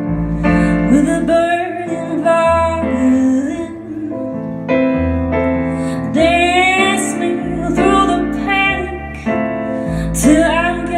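A woman singing a slow song, accompanying herself on a keyboard piano with sustained bass notes.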